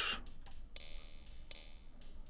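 Hi-hat and cymbal pattern playing quietly through a digital delay effect: short ticks with their echoes, and a held cymbal wash from just under a second in.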